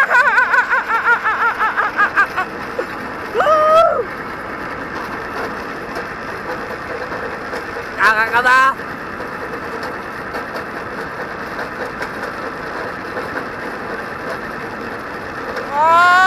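A man laughing and whooping while riding a zipline, over a steady rushing noise of the ride. A quick burst of laughter opens, short cries follow about three and eight seconds in, and a louder yell starts near the end.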